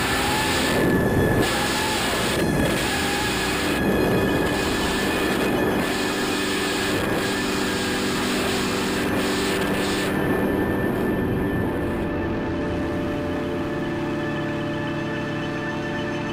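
Tense, sustained background music with low droning notes, over a dense rushing noise and a steady high whine; the rushing noise drops away about three-quarters of the way through.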